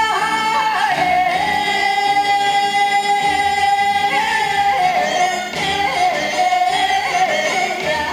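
Trot song: a singer holding long notes with small bends in pitch over backing music with a steady low beat.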